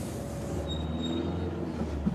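Steady low vehicle rumble, heard from inside a car, with a thin high whine for about a second in the middle.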